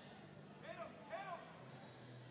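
Faint voices over a low steady arena background hum, with a few short calls about half a second to a second and a half in.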